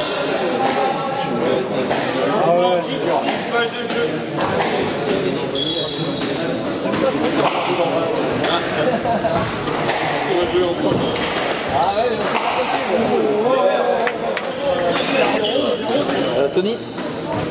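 Squash ball knocks, racket strikes and the hard rubber ball hitting court walls, coming irregularly throughout, over a continuous murmur of indistinct voices.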